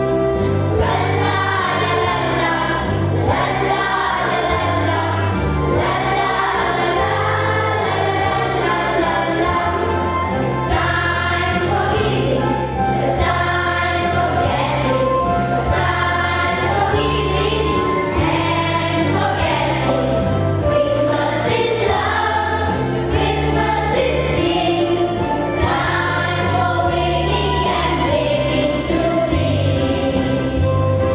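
A mixed choir of girls and boys singing a Christmas song in several voices, over instrumental accompaniment with a bass line whose notes change about once a second.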